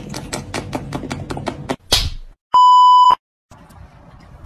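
Rapid wet lapping of a tongue at water in a glass, about six laps a second, ending in a sudden loud burst just before two seconds in. Then a loud steady censor bleep lasting about half a second.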